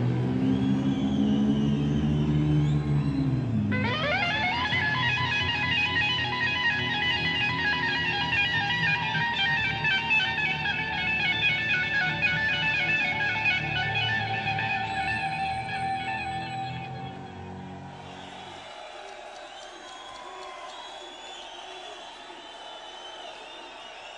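Live rock band with an electric guitar solo. About four seconds in, the guitar slides up into fast, rippling high notes held for over ten seconds. Near the end the low end drops out and the music turns quieter.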